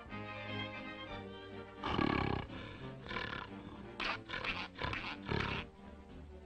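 Cartoon soundtrack music, with a loud, harsh, noisy sound effect about two seconds in, a shorter one a second later, and then a quick string of four short bursts near the end.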